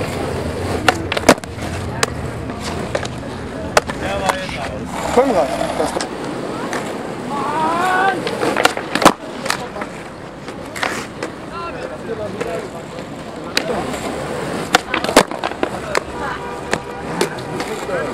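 Skateboard wheels rolling on rough asphalt, broken by several sharp wooden clacks as the board is popped and slaps back down: attempts at a backside flip.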